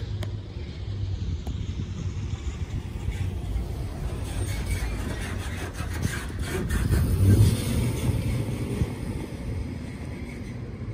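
A UPS delivery truck driving past close by, growing louder to a peak about seven seconds in and then fading, over a steady low rumble.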